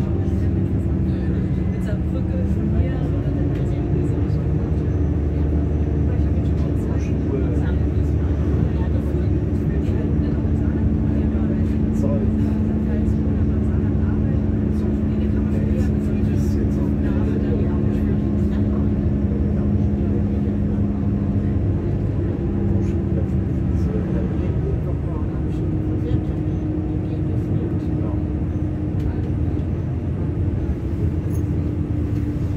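Regional train running, heard from inside the passenger cabin: a steady rumble with a low humming drive tone whose pitch steps up a couple of seconds in and shifts again near the end.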